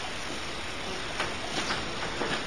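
Steady background noise, an even hiss with no distinct source, with a couple of faint ticks after about a second.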